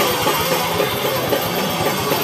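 Hardcore punk band playing live: loud distorted electric guitar and drums in a dense, continuous wash of sound with frequent sharp drum hits.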